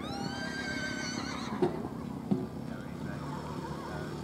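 A horse whinnying: one high call lasting about a second and a half, followed by two short knocks.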